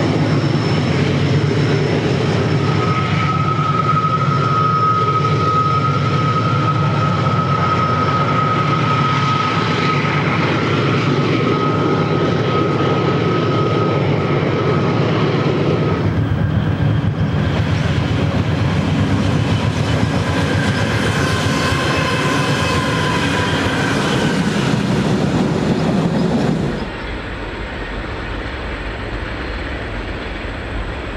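Diesel freight trains passing: locomotive engines running over a steady rumble of wheels on rail. A long, steady high squeal sounds from about three seconds in until about halfway. The sound changes at about the halfway point and drops in loudness near the end.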